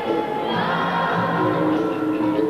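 Capoeira angola roda music: a group singing the chorus together, with long held sung notes, over the roda's berimbaus and atabaque drum.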